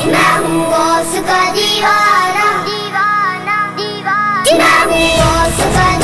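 Devotional manqabat song: a child's voice carries a bending melodic line over a steady sustained accompaniment, and a bass-heavy drum beat comes in about four and a half seconds in.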